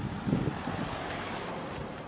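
Wind buffeting a phone's microphone outdoors: a steady rushing noise with low rumbling gusts, the strongest a moment after the start.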